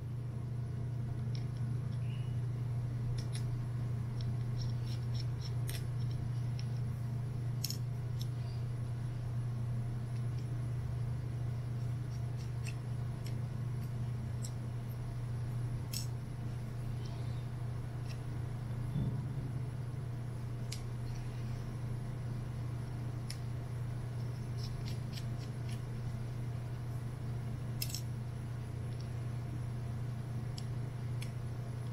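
Scattered light clicks and ticks of a precision Phillips screwdriver and tiny screws being worked out of a MiniDisc player's plastic front cover, over a steady low hum.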